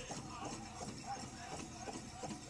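Quiet room tone with faint scattered small sounds and no distinct sound event.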